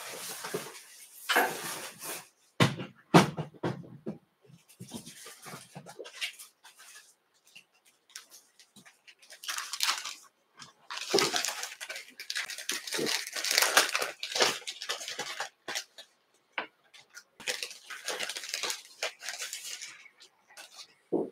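Irregular rustling and handling noises, as of hackle necks in their packets being rummaged through, in bursts with a couple of light thuds about three seconds in.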